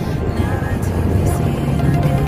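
Background music playing over the steady running noise of a moving road vehicle.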